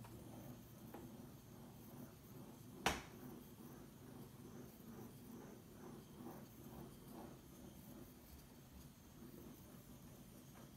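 Near silence: quiet room tone with one sharp click about three seconds in.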